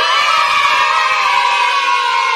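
A group of children shouting together in one long, loud cheer.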